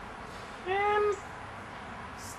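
A single short meow, about half a second long, less than a second in.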